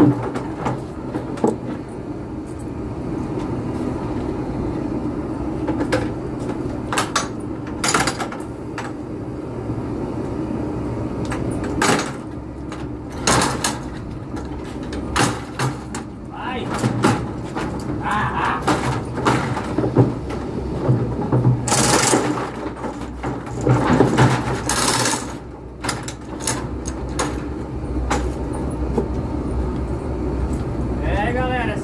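Wooden cattle squeeze chute being worked: repeated sharp knocks and clacks of its gates and latches over a steady low hum, with two longer rushing noises in the last third.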